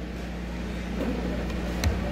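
A pause in the talk holding a steady low hum and faint background noise, with a brief faint click near the end.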